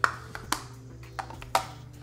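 A few sharp clicks and taps, the loudest right at the start and others at irregular intervals, over a low steady hum.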